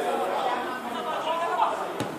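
Overlapping voices of spectators talking and calling out together.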